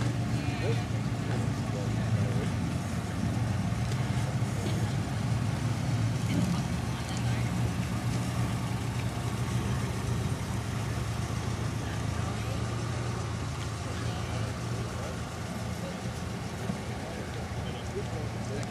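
A car engine idling steadily, a low even hum, under faint background chatter.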